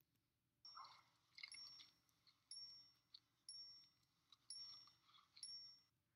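Faint film soundtrack: a soft, high-pitched ding repeats about once a second.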